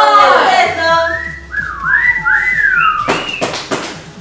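Whistling in swooping notes that slide up and down, after a long falling 'oh' from a voice. A few sharp noisy strokes come about three seconds in.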